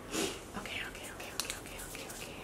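A short soft whisper near the start, then faint rustling and a few small clicks as a folded paper slip is opened.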